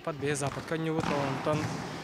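A man speaking, with a futsal ball thudding in the background as players kick it around the hall.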